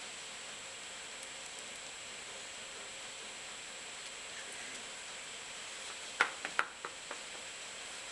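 Steady faint hiss, then about six seconds in two sharp clicks half a second apart and a few lighter ticks: a hand wire stripper closing on and stripping the end of a 14-gauge wire.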